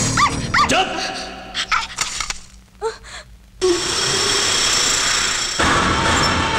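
A small spitz-type dog yapping, with a few short high yips in the first second. About halfway through, a loud steady rushing noise sets in.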